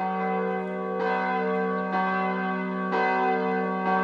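Church bells ringing, struck about once a second, each stroke ringing on into the next.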